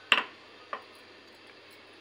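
Two sharp clicks, the first loud with a short ring after it, the second fainter about half a second later.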